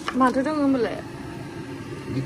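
Speech: a short spoken phrase in the first second, then low steady room noise.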